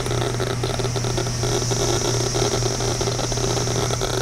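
CD V-700 Geiger counter clicking rapidly as its probe is held over a red Fiestaware plate; the dense run of counts comes from the plate's radioactive uranium glaze. A steady low hum runs underneath.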